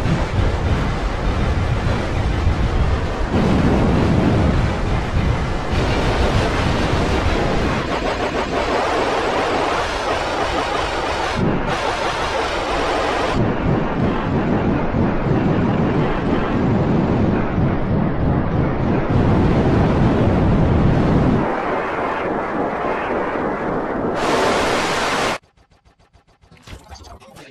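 Loud, harsh wall of heavily distorted digital noise filling the whole range, changing abruptly every few seconds and cutting off about a second before the end.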